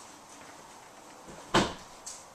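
A single sharp knock about one and a half seconds in, fading within a fraction of a second, against faint room tone.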